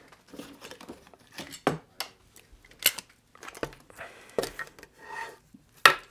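Screwdrivers and their cases being handled on a workbench, clinking and knocking against one another as they are picked through and lifted out: a run of scattered sharp knocks and clinks, the sharpest near the end.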